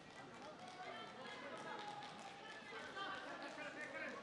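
Voices calling and shouting across a wrestling arena, several overlapping and louder in the second half, with a few short knocks of wrestlers' feet on the mat.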